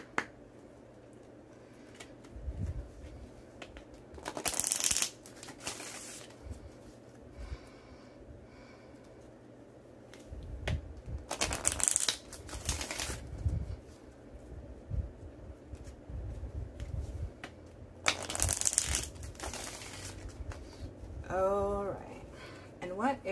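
A deck of Moonology oracle cards being shuffled by hand: three loud bursts of shuffling, about four, eleven and eighteen seconds in, with softer handling of the cards between them.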